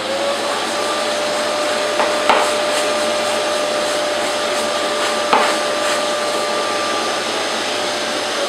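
Festool CT 26 dust extractor running at full speed, sucking through a hose with a brush nozzle to clean dust off a sanding disc. There is a steady airflow rush with a steady motor whine that settles in pitch just after the start, and two sharp knocks, one a couple of seconds in and one about five seconds in.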